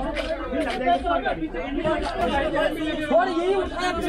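Several people chattering in Hindi, voices overlapping in a group conversation.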